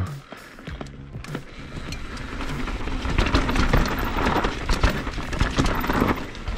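Polygon Siskiu N9 full-suspension mountain bike descending loose dirt and gravel at speed: tyre crunch and rolling noise with quick clatters and knocks from the bike. It grows louder from about two seconds in, with music underneath.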